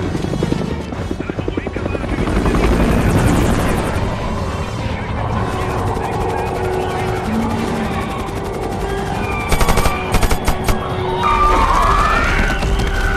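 Helicopter rotor chopping rapidly in a film sound mix, with a held music score underneath. A few short bursts of rapid gunfire come about nine and a half seconds in.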